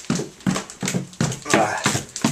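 Quick footsteps going down a flight of stairs, about two or three steps a second, with the camera jostling at each step.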